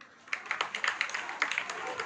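Scattered audience hand clapping, starting about a third of a second in as a loose run of sharp, uneven claps.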